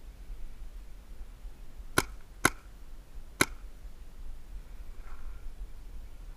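Three shots from a paintball marker, sharp pops about two seconds in: two half a second apart, then a third nearly a second later.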